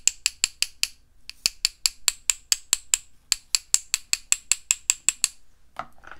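Two paintbrush handles tapping together in quick runs of sharp clicks, about six a second, broken by two short pauses: a brush loaded with watered-down white gouache is struck against another brush to splatter paint onto the paper.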